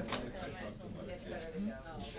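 Indistinct murmur of several people talking quietly at once, with one sharp click just after the start.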